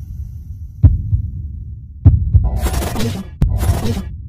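Intro sound design: a deep, throbbing low rumble with heavy booming hits about one and two seconds in, then two loud bursts of hissing noise in the second half.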